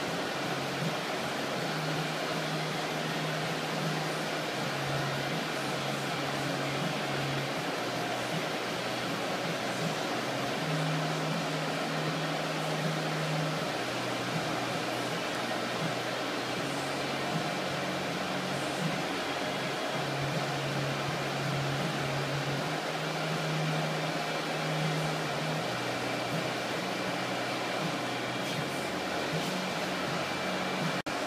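Paint-booth wall exhaust fans running steadily: a constant rushing noise with a low hum that wavers slightly in pitch.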